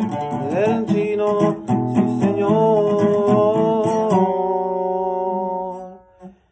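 Acoustic guitar strummed in a corrido, with a man singing over it. About four seconds in, the playing stops and a last chord is left ringing, dying away at the very end as the song finishes.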